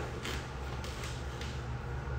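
Quiet room tone with a steady low hum and a few faint soft rustles of handling.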